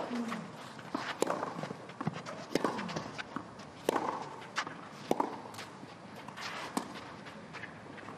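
Tennis rally on a clay court: racket strikes on the ball, about six of them a little over a second apart, alternating between the two ends, with players' footsteps on the clay between shots.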